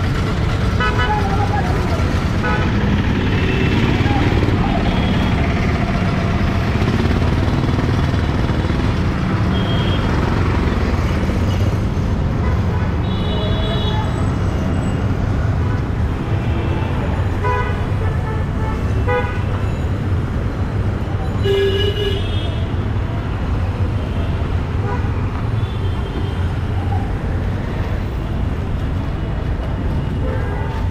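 Busy city street traffic: a steady rumble of engines with repeated short horn toots, and the voices of people nearby.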